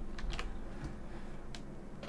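A few scattered keystrokes on a computer keyboard, mostly near the start and one about a second and a half in.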